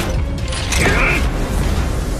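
Sci-fi sound effects of armoured battle suits in motion: mechanical whirs and clanks over a steady low rumble.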